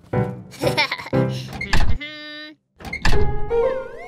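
Children's cartoon music with cartoon sound effects: a heavy thud just before two seconds in, a short held tone that cuts off suddenly, then a loud hit about a second later followed by wavering, bending tones.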